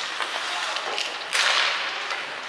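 Hockey skate blades scraping and carving on the ice, with a louder hissing scrape, like a hard stop, about one and a half seconds in, and a few light clicks of sticks and pucks.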